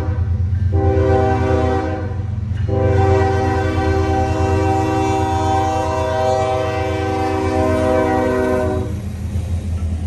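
Diesel freight locomotive's air horn sounding in blasts for a road grade crossing, the last blast held for about six seconds before it stops near the end. Under it, the deep rumble of the lead locomotive's diesel engine, which carries on as the engines pass close by.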